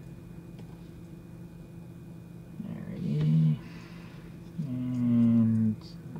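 A man humming two short, steady low notes, the first about three seconds in and the second, longer one near the end, over a faint steady background hum.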